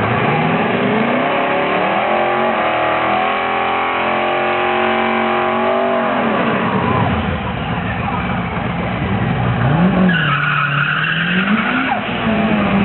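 Twin-turbo LS1 V8 of a 1994 Camaro Z28 during a burnout, with the rear tyres spinning. The revs climb over the first few seconds, hold high, and drop about six seconds in. Near the end the revs rise and fall again over a tyre squeal.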